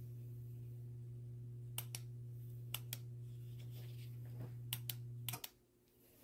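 Duraflame electric log set running with a steady low hum, broken by several pairs of sharp clicks. The hum cuts off suddenly about five seconds in as the unit is switched off.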